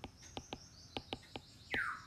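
Light, irregular clicks of a stylus tapping on a tablet while handwriting, over a faint high chirping. Near the end comes a short, louder animal call that falls in pitch.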